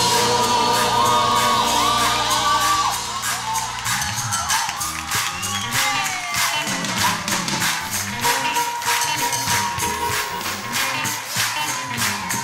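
A school choir singing a Christmas carol. About four seconds in, the held chord gives way to a steady clapped beat under the voices, with cheering from the crowd.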